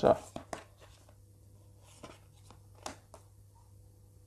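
A woman's voice finishes a spoken word. Then comes a quiet pause with a few faint, short clicks in the first half second and again around two and three seconds in, over a faint low hum.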